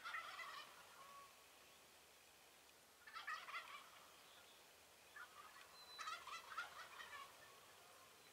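Merriam's wild turkey toms gobbling while strutting: a gobble at the start, another about three seconds in, and a longer run of gobbling from about five to seven seconds in.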